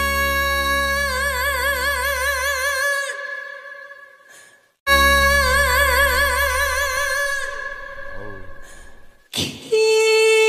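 A trot singer holds long notes with wide vibrato over the backing band, then fades away. After a brief drop-out the held note comes back suddenly and fades again, and new music starts just before the end.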